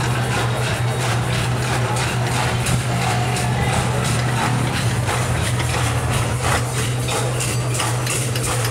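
Background music: a steady low drone with light percussion ticking over it.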